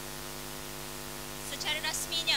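Steady electrical hum in the audio feed: a constant low buzz with a ladder of evenly spaced overtones. A voice cuts in briefly near the end.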